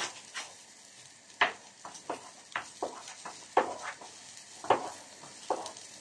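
Spinach-and-cheese börek frying on a round flat pan: a faint steady sizzle broken by irregular sharp pops and crackles, about one or two a second.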